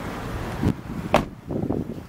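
A car's rear passenger door being shut: a lower knock followed about half a second later by a sharp thump, over rumbling wind on the microphone.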